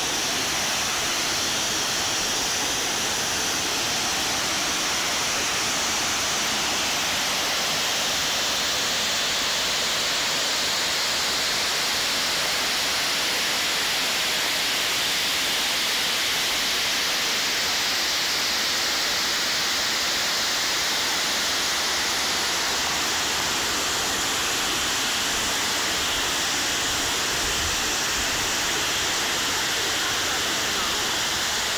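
Steady rushing of a mountain stream through a rocky gorge, even and unbroken.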